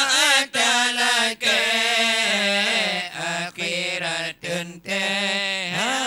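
Unaccompanied male chanting of Acehnese dike, a devotional Islamic chant: a long melodic vocal line with sliding, ornamented pitch, broken by a few short breaths.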